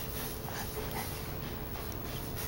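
Faint snuffling mouth and breathing sounds from a baby chewing a piece of carrot, a few small noises in the first second over quiet room tone.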